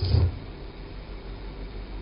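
A pause in speech that leaves only steady room tone: a low hum with a faint even hiss.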